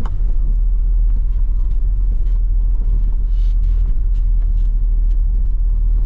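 Steady low rumble inside a car's cabin as it drives slowly over a rough dirt road, engine and tyre noise together.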